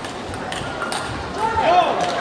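A few sharp clicks of a table tennis ball off the rubber bats and the table in the first second as a rally ends, then a loud shout about a second and a half in.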